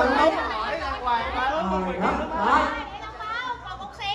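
Several people talking over one another: voices chatting.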